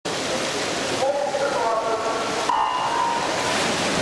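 Swimming race start in an echoing indoor pool hall: a voice calls out about a second in, then a flat electronic start beep sounds about two and a half seconds in. The swimmers dive in with splashing over a steady wash of water and crowd noise.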